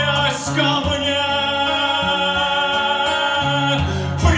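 A man singing a Russian romance to his own acoustic guitar. He holds one long sung note for about three seconds while the guitar plays low notes underneath.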